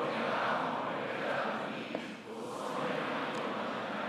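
A congregation reading a Bible passage aloud in unison, many voices blending together with a brief dip between phrases about two seconds in.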